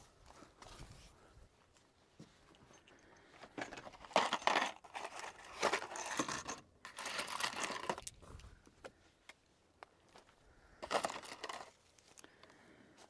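Metal clicking and clinking in a few short bouts, the sound of guns and loose cartridges being handled between shots.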